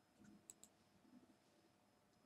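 Two faint, quick computer mouse clicks close together about half a second in; otherwise near silence.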